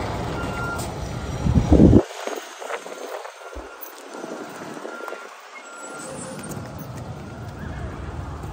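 Footsteps on wet gravel as a phone is carried walking, with wind rumbling on the microphone, loudest just before two seconds in.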